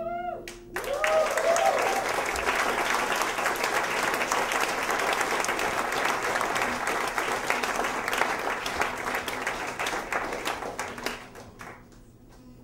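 Audience applauding and cheering as a live song ends, with a few whoops in the first two seconds. The last guitar chord dies away just at the start, and the applause fades out near the end.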